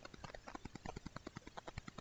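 Faint, rapid, irregular clicking, roughly eight to ten small clicks a second, in a pause between spoken phrases.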